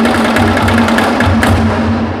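Gamelan-style dance music, loud: fast, steady drum and struck-percussion strokes over a held low tone.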